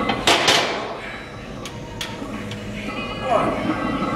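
Metal clanking of a heavily loaded leg press sled as it is released and starts to move, a sharp clank about half a second in, followed by a few lighter knocks.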